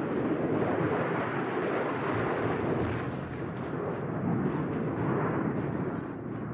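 Steady rushing noise of a YF-22 prototype jet fighter crashing onto the runway and skidding along it in flames, from a documentary soundtrack played through hall loudspeakers.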